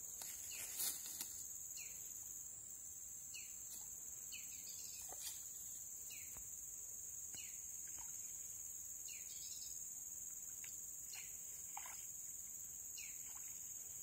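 Wild bird calling repeatedly in short downward-sliding chirps, about one or two a second, over a steady high-pitched drone of insects.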